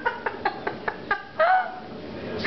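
A person laughing in a quick run of high-pitched giggles, about five a second, ending in a louder drawn-out squeal of laughter.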